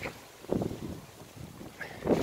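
Gusty wind buffeting the microphone ahead of a storm, a rough low rush that swells about half a second in and then eases.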